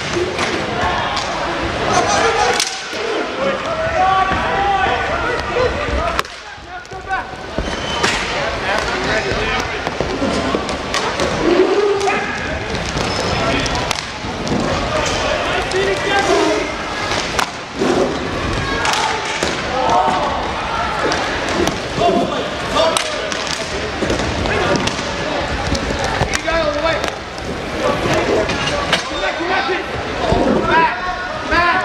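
Inline hockey play: frequent sharp clacks and knocks of sticks and puck, and thuds against the boards, over shouting and chatter from players and spectators.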